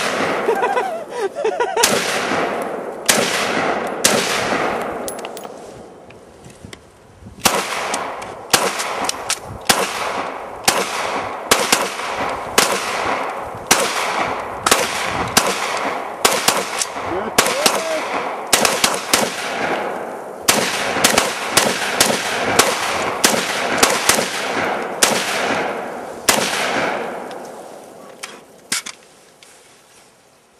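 Rapid, irregular gunfire from several shooters firing at once with AR-15 rifles and handguns. The shots overlap and each trails off in a short echo. The firing thins out about 5 seconds in, picks up again densely a couple of seconds later, and tails off into a few last shots near the end.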